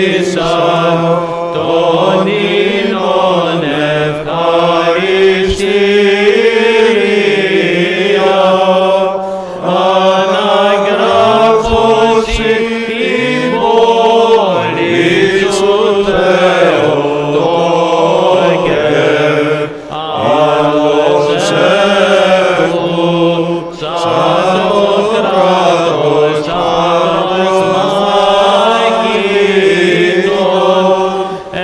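Male voices singing Greek Orthodox (Byzantine) chant: a slow, melismatic hymn, the melody winding over a steady low held note.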